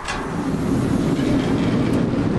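Large sliding door rolling open along its track: a click as it starts to move, then a steady low rumble.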